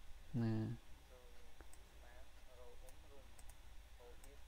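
A few faint, sharp computer mouse clicks, after one short spoken word.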